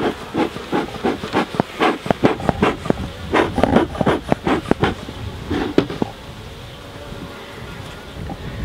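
Beekeeper's bellows smoker squeezed in a rapid run of short puffs over the hive's frames, with honeybees buzzing. The puffs stop about six seconds in, leaving the steady hum of the bees.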